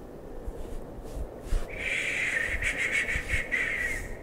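A person crying softly, sniffling and breathing unevenly, getting louder about two seconds in.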